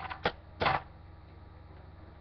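Handling noise: two short clicks and a brief rustle in the first second, then only a faint steady hum.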